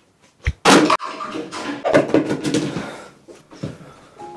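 A thump about half a second in, then a loud crash followed by a couple of seconds of clattering and rustling that dies away.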